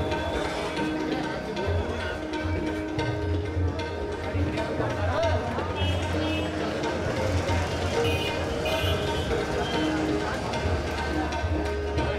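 Tabla playing over a steady held drone, as a background music track.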